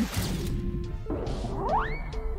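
Cartoon sound effects over background music: a knock at the start, a whoosh about a second in, and a whistle rising steeply in pitch near the end, as a cart wheel strikes a bump and pops off.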